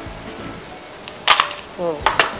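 Quiet background music, then about a second in a short, loud clatter of ice cubes in a bowl as it is set down on a glass table.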